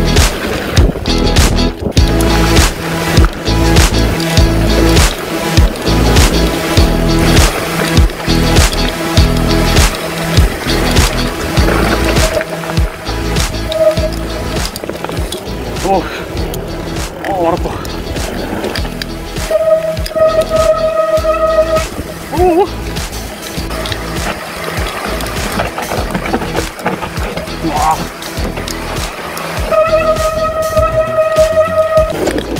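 Mountain bike riding fast down a dirt trail: tyres running over dirt and a constant clatter of knocks and rattles from the bike over bumps. Background music plays underneath.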